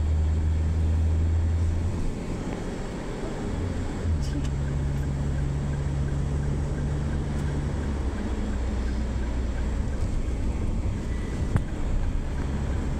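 Car cabin noise while driving: a steady low engine and road drone. It eases off about two seconds in and picks up again with a slightly higher hum about four seconds in.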